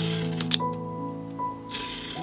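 Background music with sustained notes, over two short scratchy strokes of a utility knife slicing into a cardboard strip, one at the start and one near the end, with a sharp click just after the first.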